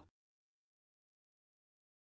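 Near silence: a digital pause with no sound.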